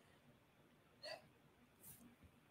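Near silence broken by one brief, small vocal noise from the woman at the microphone about a second in, then a soft intake of breath near the end.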